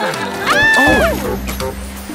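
Cartoon background music for a children's song, with a short high cry about half a second in that rises and then falls in pitch.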